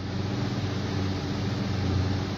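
A steady low machine hum with an even hiss, holding at one level throughout.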